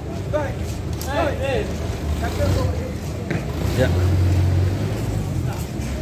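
Voices talking in the background over a low engine rumble that swells about two seconds in and again near the middle.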